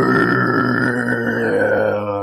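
A man's long, rasping, guttural vocal sound held steady in one breath.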